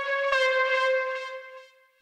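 A single synthesizer note near C5 played from FL Studio Mobile's piano roll. It holds one steady pitch and fades out over the last half second.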